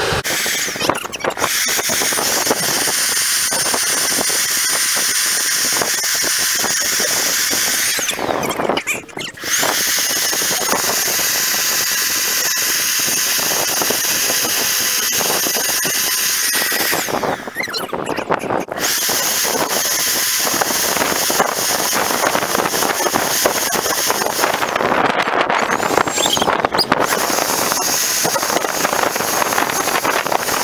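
Electric leaf blower running: a loud, steady rush of air with a high motor whine. It drops out briefly three times, about 9, 18 and 25 seconds in, and the whine rises again as it spins back up.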